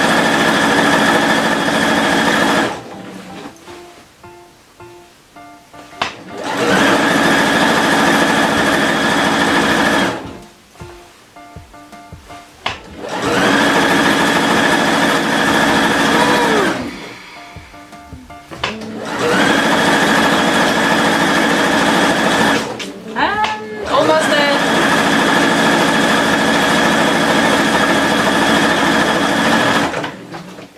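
Domestic electric sewing machine stitching a jersey hem in runs of about three to six seconds, stopping briefly between runs four times.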